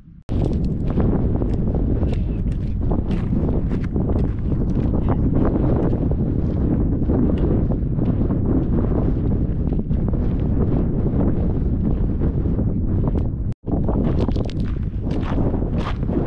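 Wind buffeting the microphone, with footsteps crunching on a gravel track. The noise breaks off for an instant about three-quarters of the way through.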